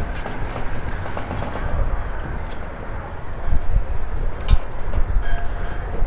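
Strong wind buffeting the microphone: a loud, continuous low rumble, with a couple of light knocks near the end.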